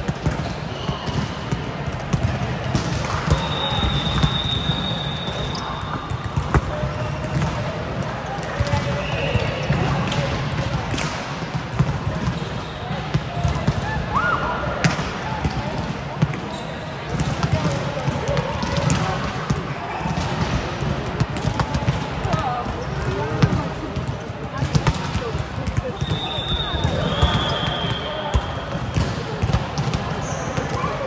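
Volleyballs being hit and bouncing on a sports-hall court floor, with a few short, high shoe squeaks and players' voices in the hall.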